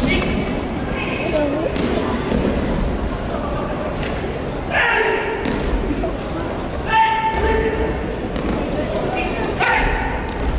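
Thuds of aikido throws and breakfalls onto tatami mats, over the echoing murmur and voices of a crowd in a large sports hall.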